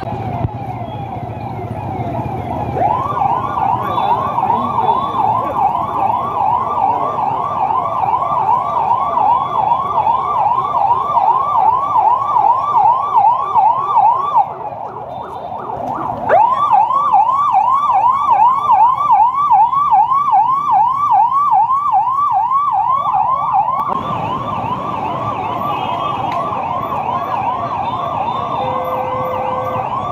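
Police vehicle siren sounding a fast yelp, a rising-and-falling tone about two times a second. It breaks off briefly about halfway through and starts again.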